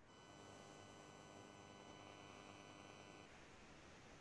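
Near silence: faint room tone with a faint steady hum that drops away about three seconds in.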